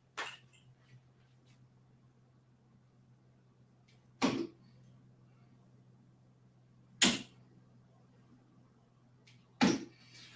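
Darts thrown one at a time and striking a miniature dartboard: three short, sharp hits about two and a half seconds apart, over a faint steady low hum.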